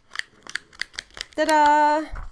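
A punched sheet being peeled off a Filofax refillable notebook's spiral rings: a quick run of about eight small, sharp clicks as its slotted holes pop free of the rings one after another.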